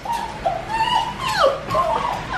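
Dog whining, a run of high whines with several sliding down in pitch: she wants to be let out to the dog run.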